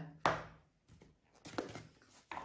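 A brief knock about a quarter-second in, then a few faint handling sounds: kitchen items being handled or set down on a wooden chopping board.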